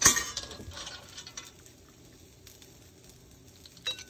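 Metal spoon and ladle clinking against a cooking pot and an enamel bowl while curry is served: one sharp ringing clink at the start, a few lighter clinks over the next second and a half, and one more near the end.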